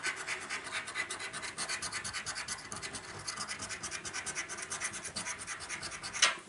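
A coin scratching the silver latex off the panels of a paper scratchcard in quick, steady strokes, several a second.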